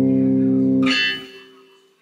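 Electric bass guitar chord, several strings sounding together and ringing steadily, then damped about a second in with a short bright string noise, leaving it to die away.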